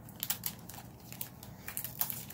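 A spool of ribbon being handled and the ribbon's end picked loose and pulled off: a scatter of light crinkles and small clicks.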